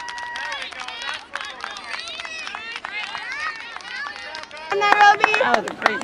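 Many high young voices shouting and calling over each other on a soccer field, one held call at the start. Near the end the sound cuts abruptly to louder, closer voices.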